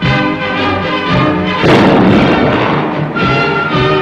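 Military band music playing, with a loud crash about one and a half seconds in that dies away over roughly a second.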